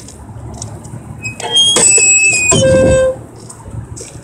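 Electric cigar box guitar sounding through its amplifier as it is lifted and handled: about a second and a half in, a loud stretch of ringing string tones over a low hum begins, then cuts off suddenly about three seconds in.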